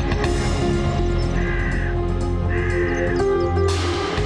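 Background music with sustained tones. Two short higher sounds rise over it, the first about a second and a half in and the second about a second later. A bright, wide wash of sound comes in near the end.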